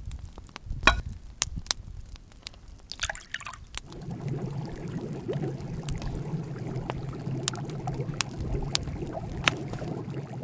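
Scattered clicks and a short crackle, then from about four seconds a continuous liquid sound with drips over a low hum, as water fills a black clay pot of crushed ice.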